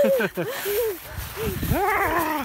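A woman laughing hard in a string of short, high-pitched peals that rise and fall, with wind rumbling on the microphone.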